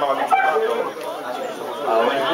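Several people's voices talking at once, indistinct chatter with no clear words.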